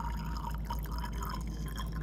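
Water squirted from a plastic wash bottle into a glass graduated cylinder, trickling and dripping, over a steady low electrical hum.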